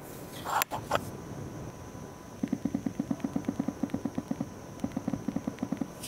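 iQOO 7 smartphone's vibration motor giving a short haptic buzz under each keystroke on its on-screen keyboard, set to the highest haptic intensity and picked up through a microphone lying on the phone. The buzzes come in a fast, even run of about seven a second, starting a couple of seconds in with a short break near the end. A few small handling clicks come in the first second.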